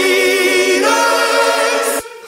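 Pop-rock song's stacked, choir-like vocals holding long notes with no bass or drums underneath. The music breaks off abruptly at the very end.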